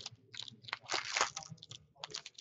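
A 2015-16 Upper Deck Series One hockey card pack's wrapper being torn open and crinkled by hand, in irregular rustling bursts.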